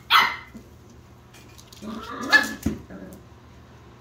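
Young puppy barking: a short bark at the very start and a clearer, higher bark about two seconds in.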